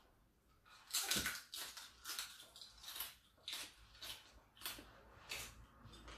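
Close-up chewing of crispy deep-fried pork skin: a string of sharp, irregular crunches starting about a second in, the first ones loudest.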